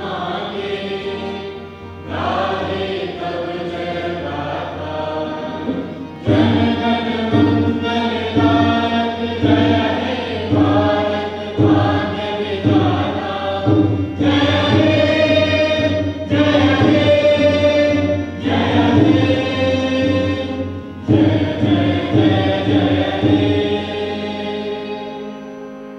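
A choir singing with instrumental accompaniment: long held notes in phrases of a second or two, each starting sharply after a short break.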